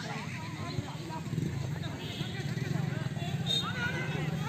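Scattered distant shouts and calls from footballers during play, over a steady low rumble.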